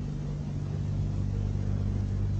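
Steady low electrical hum with hiss underneath: the background noise of an old speech recording in a pause between sentences.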